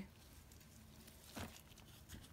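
Near silence: room tone, with one faint short rustle about one and a half seconds in.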